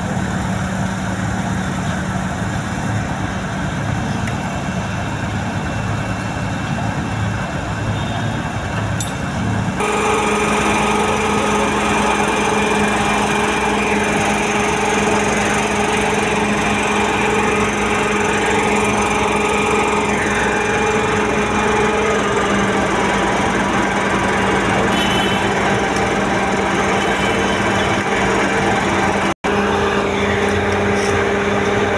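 Diesel engine of a SANY STC 600 truck crane running steadily. About ten seconds in it speeds up, its hum rising in pitch and getting louder, and it holds at that higher speed.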